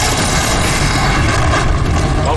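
Loud, steady rushing noise with a deep rumble underneath.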